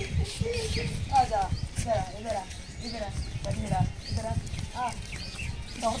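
People talking in the background, with short high bird chirps repeating throughout.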